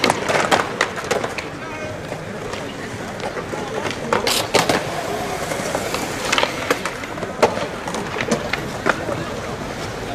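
Skateboard wheels rolling on a concrete skatepark, with repeated sharp clacks of boards striking the ground and ledges, the loudest pair a little after four seconds in.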